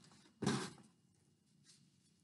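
A small door on a toy mailbox is opened and an envelope is pulled out: one short rustling scrape about half a second in, then only a faint tap near the end.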